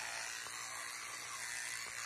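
Electric toothbrush with a round brush head running steadily while brushing teeth in the mouth.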